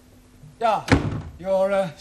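A door closing with a single thud about a second in, among short bits of speech.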